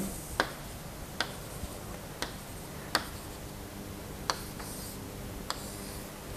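Chalk tapping against a blackboard six times at uneven intervals, marking the dots of a drawn diagram. There is a brief chalk scrape about three-quarters of the way through, and a low steady hum underneath.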